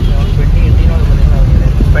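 Cabin noise inside a moving Suzuki taxi: a steady low rumble of engine and road, with faint voices under it.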